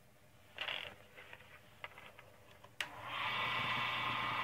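A few faint clicks and a short scrape, then from about three seconds in the steady electric hum of the wood lathe's motor running.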